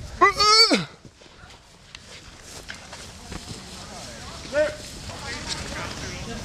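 A man's loud, wordless cry about a second long near the start, falling in pitch, then a shorter, fainter vocal yelp about four and a half seconds in.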